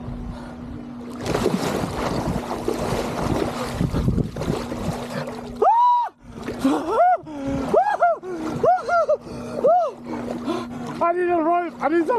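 Water splashing as a man plunges into one-degree seawater, followed by a string of short, high-pitched yelps from the cold, each rising and falling in pitch.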